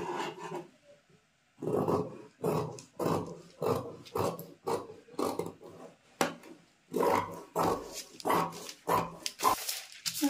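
Fabric scissors cutting through layered brocade blouse fabric, snipping about twice a second, with a pause about a second in and another just past six seconds.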